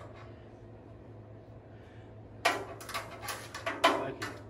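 A low steady hum for the first couple of seconds, then from about two and a half seconds in a quick run of sharp metallic knocks and clanks from steel car-body parts being handled, the loudest at its start and near the end.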